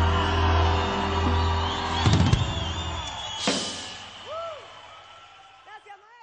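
A live folk band's closing chord held, then cut off with a drum hit about two seconds in and a cymbal-like crash a moment later, the music ringing away and fading out. A few faint rising-and-falling calls are heard in the fading tail.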